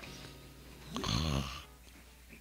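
A person snoring: one snore about a second in, lasting about half a second, over soft background music.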